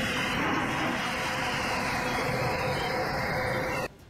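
Sukhoi Su-25 attack jet firing a salvo of rockets from under its wing, heard over the jet's own noise: a loud, steady rushing noise that cuts off abruptly near the end.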